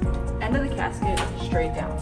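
Light metallic knocks and clatter from the metal casket's foot-end panel being lowered on its piano hinge, over background music.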